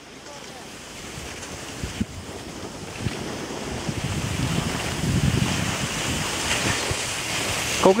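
Wind rushing over the microphone of a camera carried by a skier moving downhill, building over the first five seconds or so and then holding steady, with a low rumble.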